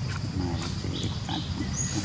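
Macaque monkeys calling: several short low sounds and a few brief high chirps.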